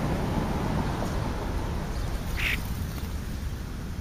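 A bird gives a single short call about two and a half seconds in, over a steady low outdoor rumble.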